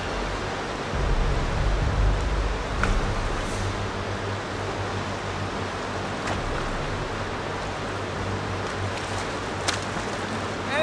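Fast river rapids rushing steadily, with a deep rumble underneath. A few faint clicks come through, the sharpest near the end.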